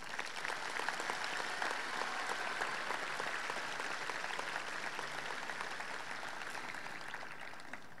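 Audience clapping, fairly faint and distant, building in the first second and tapering off near the end.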